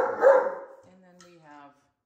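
Great Dane vocalising: a few loud woofs in the first half second, trailing off into a quieter call that falls in pitch.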